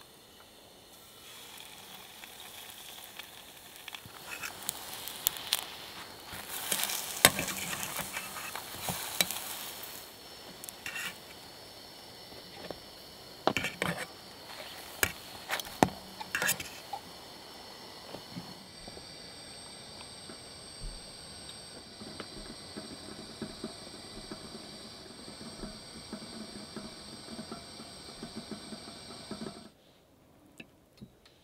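Pancake batter frying in oil in a small aluminium camping pan over a canister gas stove: a steady sizzle, loudest for a few seconds after the batter goes in, with sharp metal clicks of forks against the pan as the pancakes are turned.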